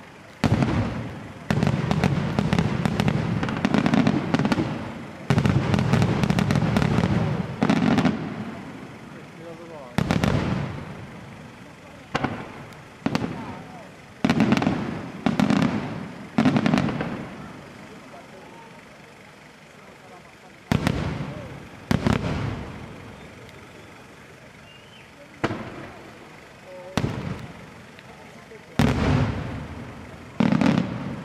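Aerial firework shells bursting in a pyrotechnic display: a dense, rapid run of reports for the first eight seconds or so, then single bursts every second or two with short lulls between, each report echoing away.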